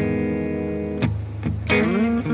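Telecaster-style electric guitar playing neo-soul chords: one chord struck at the start and left ringing for about a second, then a few quick strums near the end with a note sliding upward.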